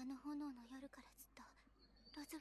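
Quiet anime dialogue: a woman's soft, low voice speaking Japanese in short phrases.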